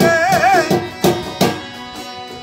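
Balochi folk music: a man singing a held note with a wide, wavering vibrato that ends about two-thirds of a second in. It is followed by a few sharp strummed strokes on long-necked lutes, each about a third of a second apart, fading toward the end.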